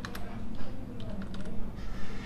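Computer keyboard being typed on: a short run of separate key clicks as a word is entered.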